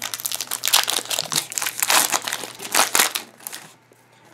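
Foil booster-pack wrapper crinkling and crackling as hands handle it and work it open, with louder crackles about two and three seconds in.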